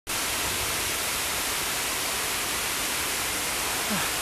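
Steady, even hiss picked up by a compact camera's microphone, with no speech.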